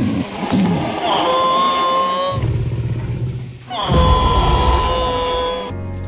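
Film soundtrack with two long held notes at the same pitch, about a second in and again from about four seconds in. A low rumble runs under them and is loudest with the second note.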